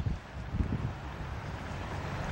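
Wind blowing across the camera microphone: a low, uneven rumble with a faint hiss.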